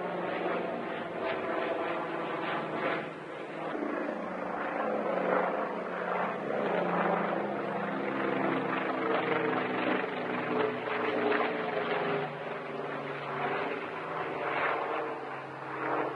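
Propeller-driven firefighting aircraft engine droning steadily, its pitch drifting slowly up and down.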